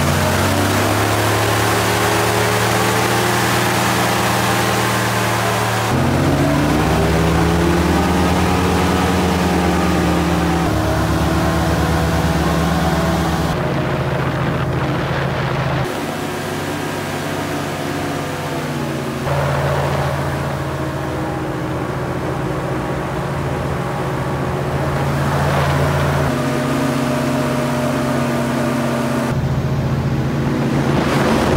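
Airboat powered by a supercharged 440-cubic-inch GM engine driving counter-rotating carbon-fibre propellers, running hard under way. The engine-and-propeller drone rises and falls in pitch with the throttle, in several segments that change abruptly.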